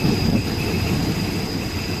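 Passenger train carriage running along the track, heard from an open window: a steady low rumble of wheels on rails with a thin, steady high whine over it.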